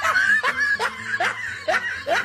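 A person laughing in short, repeated snickers, about two or three a second, each rising in pitch.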